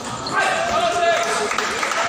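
Table tennis ball knocking off paddles and table during a rally. About half a second in, spectators' voices and shouts rise over it as the point ends.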